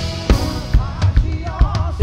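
Acoustic drum kit played live in a tribal groove: bass drum hits about twice a second with snare, toms and cymbals, over the worship band's music.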